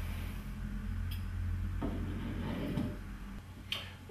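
Small handling clicks and a short rustle as the valve of a liquid-fuel camping stove is turned closed by hand, over a steady low hum.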